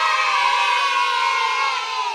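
A group of children's voices cheering together in one long held cheer, sinking slightly in pitch and fading near the end.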